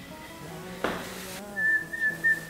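Soft background music over a low held drone. About a second in there is a short hiss, and near the end a single high whistled note is held steady for about a second.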